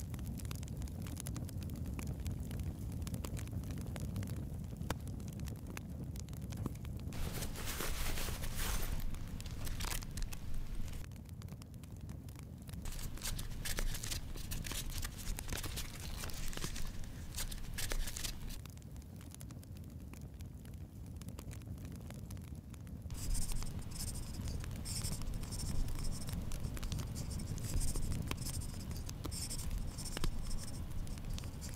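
Paper rustling as the pages of a small notebook are handled, then writing on paper: repeated short scratching strokes in the last several seconds. A steady low hum runs underneath.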